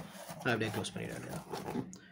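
A man's voice talking; the speech recogniser wrote no words here, and no other sound stands out above it.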